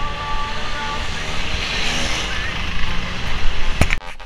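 Wind buffeting the microphone of a handheld camera carried by a running person, a steady rumble and hiss over general street noise. A sharp click comes near the end.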